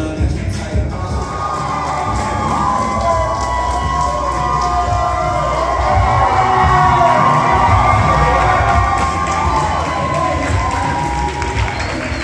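A crowd cheering and shouting, many voices at once, building from about a second in and loudest around the middle.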